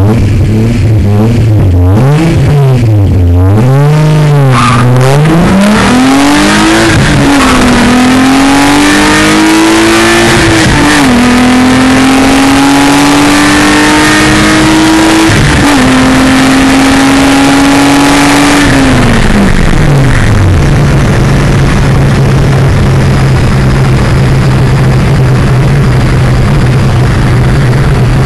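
A Volkswagen Golf Mk2's 2.8-litre VR6 engine heard from inside the car: revved up and down several times in the first five seconds, then pulling hard at high revs with a sharp drop in pitch about eleven seconds in. Near the twenty-second mark it eases off, the pitch falling, and settles into a steady lower drone.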